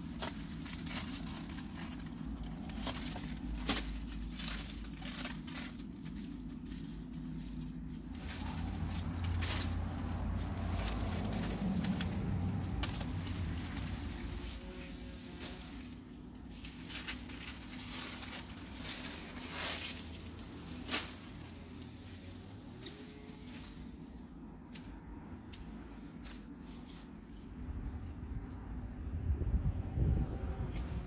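Large, dry zucchini leaves diseased with powdery mildew being torn and snapped off the plants by hand: rustling and crumpling foliage with many scattered sharp snaps.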